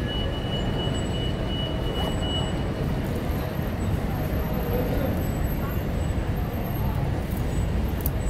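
Steady street traffic: the low rumble of trucks and cars moving along a city street.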